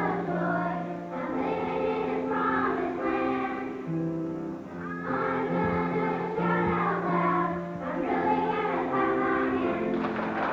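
A group of young children singing together as a choir, with low, held accompanying notes beneath the voices that change pitch every second or so.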